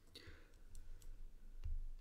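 A few faint, scattered clicks and a soft low thump near the end.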